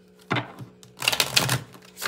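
A deck of tarot cards being shuffled by hand. A few separate taps come first, then about a second in a dense run of quick card clicks that lasts over half a second.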